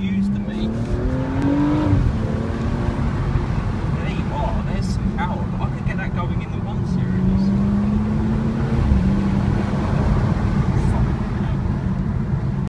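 BMW M235i's turbocharged straight-six heard from inside the cabin: the revs climb under acceleration for about two seconds, then drop suddenly, and the engine pulls again with a slight rise around the seven-to-nine-second mark. Steady road and tyre rumble sits underneath throughout.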